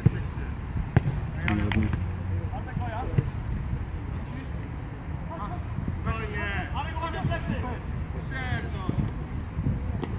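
Football players calling out to each other on the pitch, with sharp thuds of the ball being kicked, one at the very start and one about a second in.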